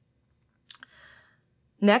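One sharp click about two-thirds of a second in, with a smaller one just after, then a faint breath of about half a second, before a woman's voice starts speaking near the end.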